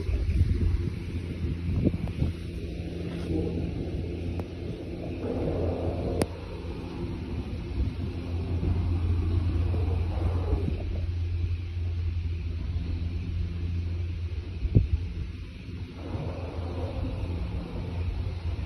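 Wind on a phone's microphone with a steady low rumble underneath, and a couple of faint knocks about six seconds in and near fifteen seconds.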